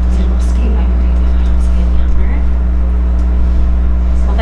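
Loud steady electrical hum in the recording, a low buzz with evenly spaced overtones, under faint, indistinct conversation.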